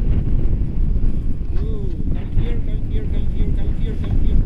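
Wind rushing and buffeting over an action-camera microphone during a tandem paraglider flight. In the second half a faint pitched sound repeats in short, evenly spaced notes above the rumble.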